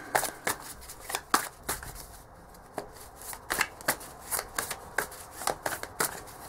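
A deck of cards being shuffled by hand: a run of quick, irregular card snaps and taps, with a short lull about two seconds in.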